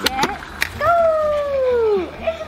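A short sharp pop about half a second in as the automatic dog ball launcher fires, followed by a long, drawn-out human exclamation falling in pitch.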